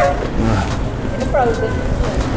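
Drift trike rolling over a hard store floor: a steady low rumble from the wheels and frame, with short bursts of voices over it.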